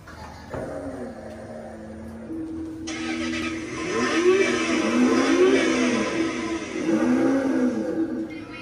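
Recorded engine start-up and revving sound effect from a kids' electric ride-on toy sports car's built-in speaker. A short tone plays first; about three seconds in, the engine sound starts and revs up and down several times.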